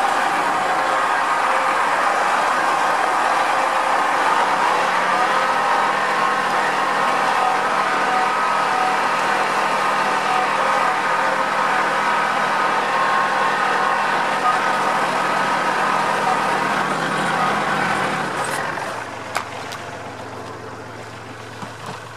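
Tractor engine running steadily under way, with a slight rise in pitch around four or five seconds in. About eighteen seconds in it throttles down and carries on idling more quietly, with a few light clicks.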